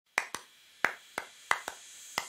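Six sharp percussive snaps in an uneven rhythm, falling roughly in pairs, each with a brief ring: the percussion opening of a theme tune, before the melody comes in.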